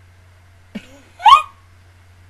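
A woman's short, loud, high-pitched vocal squeak that rises in pitch, just after a faint low vocal sound about three quarters of a second in. A faint steady low hum runs underneath.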